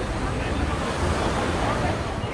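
Wind buffeting the microphone, a steady low rumble, over the chatter of people on a busy street.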